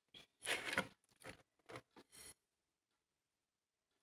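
Several short scraping and rustling handling noises in the first two seconds, like a ceramic plate and crumbly laddu mixture being moved on a hard surface, then quiet.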